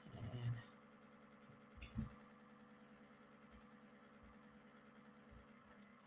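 Near silence: faint room tone with a steady low hum, a brief faint voice sound at the very start and a soft faint sound about two seconds in.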